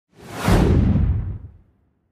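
Whoosh sound effect for an intro logo reveal, swelling in quickly over a deep rumble and fading away within about a second and a half.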